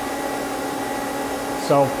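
Steady hum with a few fixed tones from a powered-up Mazak CNC lathe standing idle. A man's voice starts near the end.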